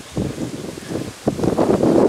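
Wind buffeting a handheld camera's microphone in uneven gusts, getting louder about a second and a half in.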